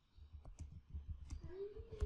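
Computer keyboard being typed on, a quick irregular run of faint key clicks.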